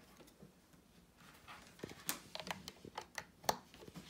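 Light clicks and knocks of a plug-in power adapter and its cord being handled and plugged in, a scattered run of them in the second half, the sharpest about three and a half seconds in.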